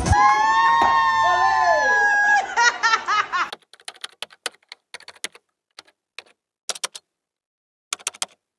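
A long held pitched sound with overtones ends in a few quick rising-and-falling blips. Then come sparse typewriter-style key clicks in small clusters, a sound effect timed to text being typed out on screen.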